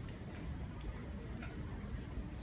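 Hushed arena room tone: a steady low rumble with a few faint ticks, the clearest about one and a half seconds in.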